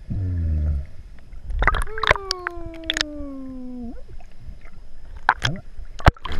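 A person's voice heard muffled through the water by a submerged microphone: one long drawn-out tone sliding down in pitch for about two seconds, starting about two seconds in, over scattered clicks and gurgles of water against the camera.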